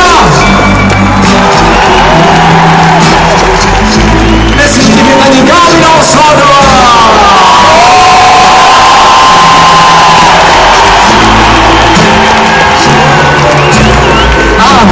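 Loud live band music with an arena crowd cheering and whooping over it.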